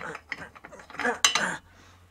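Steel L-shaped lug wrench clinking against a wheel nut and the steel wheel as it is fitted on, a few sharp metal clinks with the loudest cluster about a second in. It is the wrong wrench for these nuts.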